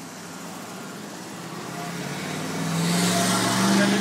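A car driving past on the street: engine hum and tyre noise growing steadily louder as it approaches, loudest near the end.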